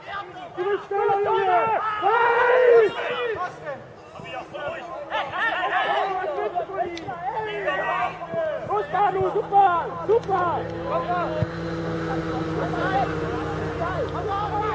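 Voices of football players and spectators shouting and calling across the pitch, loudest in the first few seconds, over a background of outdoor chatter. A low steady hum comes in underneath near the end.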